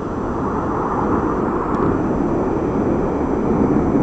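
Jet engines of a formation of BAE Hawk jets from a display team flying overhead: a steady, deafening rush of jet noise that grows slightly louder as the aircraft pass.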